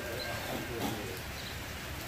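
Faint, indistinct voices over steady outdoor background noise, with a couple of short, high chirps.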